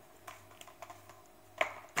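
Light plastic clicks and taps as an 18 V Bosch slide-on battery pack is unlatched and slid off the base of a cordless drill, the sharpest click about one and a half seconds in.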